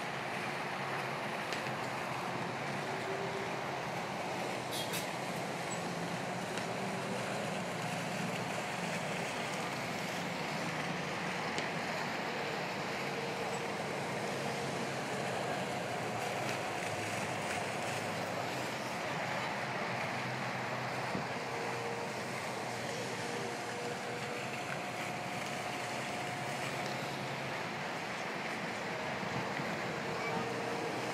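Steady rushing noise of a giant swing-arm amusement ride running, with a low hum underneath and a few faint drawn-out tones now and then.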